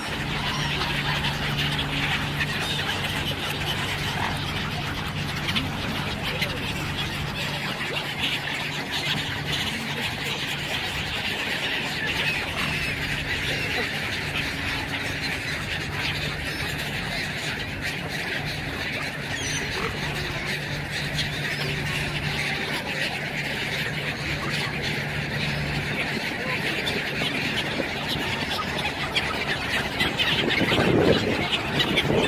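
Large mixed flock of waterfowl (mute swans, mallards and gulls) calling in a dense, steady chatter, with a steady low hum underneath that stops near the end.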